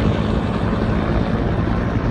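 Firefighting helicopter flying overhead: a loud, steady rotor and engine noise with a low, even drone.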